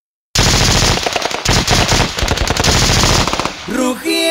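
After a brief silence between tracks, a sudden long burst of rapid machine-gun fire, a recorded sound effect opening a norteño corrido. Near the end the gunfire stops and the band comes in.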